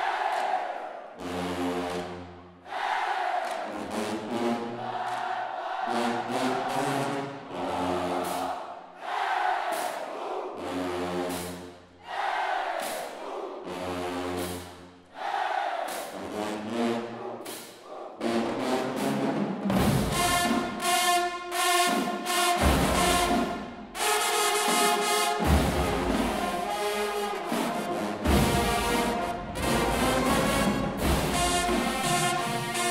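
High school marching band: a series of long, low held notes in short phrases with pauses between them. About twenty seconds in, the drumline and full band come in loud with a driving beat.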